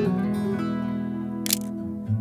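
Acoustic guitar background music, a chord ringing out and slowly fading, with a single camera-shutter click about three-quarters of the way through.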